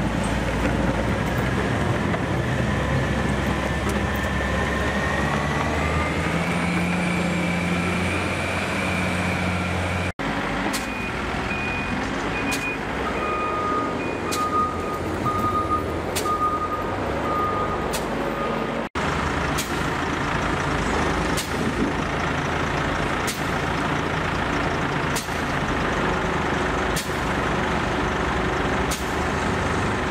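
Heavy diesel snow-clearing machinery running: a motor grader's engine rising in pitch as it revs. Then a reversing alarm beeps repeatedly, and a wheel loader's engine runs with short sharp clicks about every two seconds.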